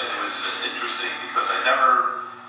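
Only speech: a man talking in a steady storytelling voice.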